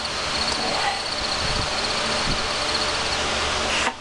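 Crickets chirping: a steady pulsing trill over a loud hiss, cut off abruptly near the end. It is the comic 'crickets' effect for the awkward silence after a joke that fell flat.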